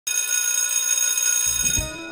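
Electric school bell ringing steadily with a bright, metallic tone, fading out near the end.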